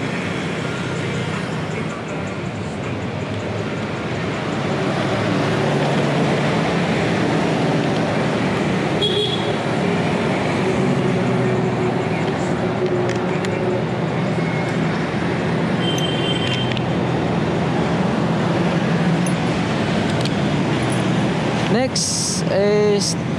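Steady road traffic noise from passing vehicles, with a low engine hum throughout that grows a little louder about four seconds in.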